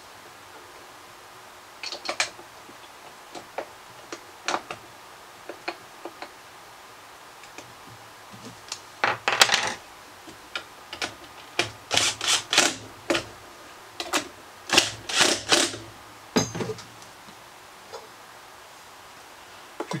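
Cordless drill-driver driving screws in a few short bursts through the middle and latter part, among scattered clicks of screws and small parts being handled.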